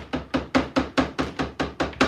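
Round stencil brushes dabbed up and down on wooden boards, pouncing paint through stencils: a steady run of quick wooden taps, about six a second.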